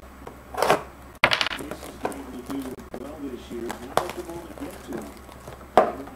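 A few short crinkling and handling noises from trading-card packs and cards being opened and handled, over a faint voice in the background.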